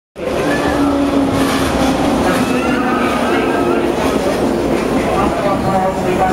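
A JR 115-series electric train pulling into the platform and rolling past close by, with a steady, loud rumble from its wheels and motors. Voices carry over the train noise.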